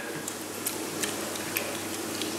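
Small, scattered clicks and splashes of pond water, about four in two seconds, as koi crowd and break the surface.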